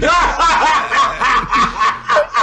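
A man laughing hard: a loud, unbroken run of high-pitched laughs, about four a second.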